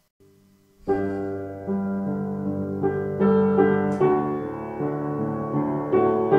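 Piano playing a slow piece of chords with a melody on top, starting about a second in after a brief near-silence.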